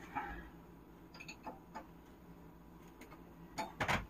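Faint clicks and taps of a wrench working on the pipe fittings under a kitchen sink, with a sharper metallic knock near the end.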